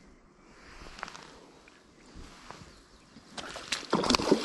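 Quiet outdoor air with a few faint clicks, then near the end a quickening run of crackling and rustling of dry grass and reeds underfoot as someone steps along the bank.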